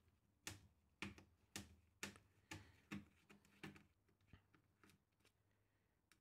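Faint light clicks, about two a second and fading out after about four seconds, from hands and a tool working at the opened charger's plastic case while freeing its display.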